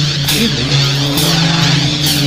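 Heavy, distorted electric guitar music, an instrumental passage with held notes that change pitch under a wavering, sweeping effect that rises and falls about once a second.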